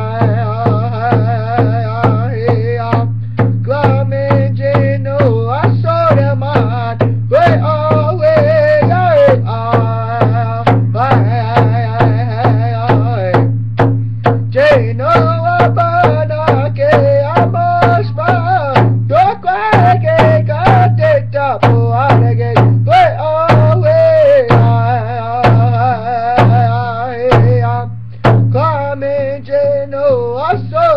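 A man singing a song in Mi'kmaq in phrases with short breaks between them, his voice wavering, over a steady drumbeat struck with a stick.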